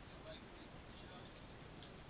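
Faint outdoor ambience: a steady low hiss with a few faint scattered ticks.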